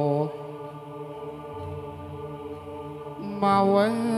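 Javanese chant-like singing over gamelan: a held note with a wide vibrato ends just after the start, a quieter stretch of low sustained tones follows, and a loud wavering sung phrase comes in about three seconds in.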